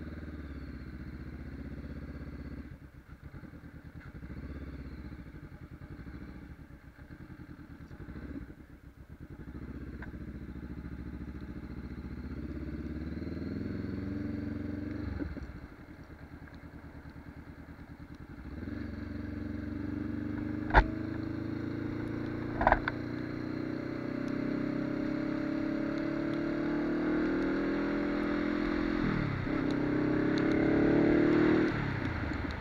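Honda CBR500R parallel-twin engine pulling away and accelerating through the gears, the revs dropping at each shift and then climbing steadily in the later part. Two sharp knocks come about two-thirds of the way in.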